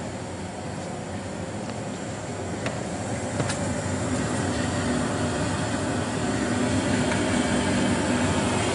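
MDG ICE Fog Q low-fog machine running with liquid CO2 and fog fluid flowing: a steady rushing noise with a faint low hum, growing gradually louder.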